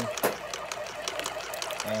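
A thin stream of liquid trickling and splashing from a dosing-pump tube into a plastic measuring cup: pump 3 delivering a forced pH dose.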